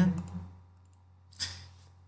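A single sharp click about a second and a half in, over a steady low electrical hum, just after the last word of speech fades.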